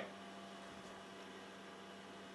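Faint steady hum with hiss: room tone with a desktop computer running.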